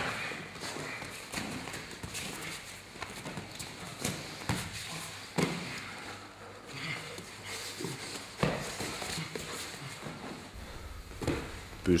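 Two fighters grappling on a training mat: bodies shuffling and scuffing, with a few dull thumps of bodies and feet hitting the mat, the sharpest about four and a half, five and a half and eight and a half seconds in.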